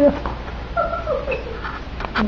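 Five-week-old puppy whimpering: a louder cry trails off at the very start, then a short high whine about a second in steps down in pitch.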